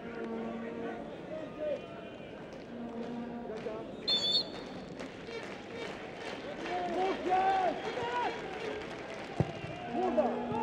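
Football stadium crowd noise of fans chanting and shouting, with a short blast of a referee's pea whistle about four seconds in.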